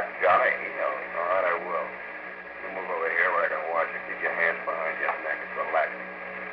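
Voices talking in an old radio drama recording, over a steady low hum and hiss from the aged broadcast transcription.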